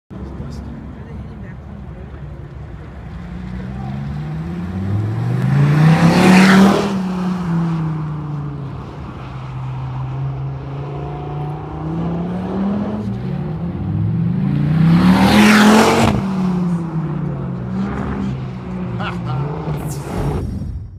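A car's engine running hard around an autocross course, its pitch rising and falling again and again as it accelerates and lifts through the cone sections. It passes close twice, loudest about six and fifteen seconds in.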